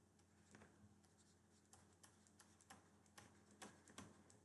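Near silence with faint, irregular clicks of a stylus tapping on a tablet's writing surface as words are handwritten.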